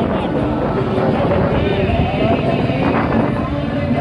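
Several motorcycle engines running steadily, with men's voices over them.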